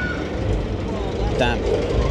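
A steady low outdoor rumble, with a single spoken word near the end.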